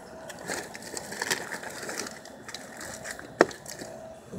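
Plastic snack packages and cardboard boxes rustling and crinkling as they are handled, with irregular light clicks and one sharp click about three and a half seconds in.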